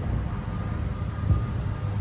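Steady low engine rumble with a faint thin whine through the middle of it.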